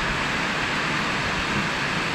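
A steady, even rushing noise with no breaks or separate sounds in it.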